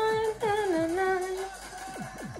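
A woman humming along to fast electronic dance music. She holds one steady note, breaks briefly, then slides down to a lower note and holds it, over a quick, evenly repeating kick-drum beat.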